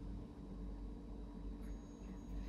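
Faint, steady low hum of a Rottne harvester's idling diesel engine heard inside the closed cab.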